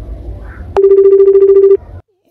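A telephone ringing: a single ring burst about a second long, a steady pitched tone with a fast trill, which cuts off abruptly. A low background rumble comes before it.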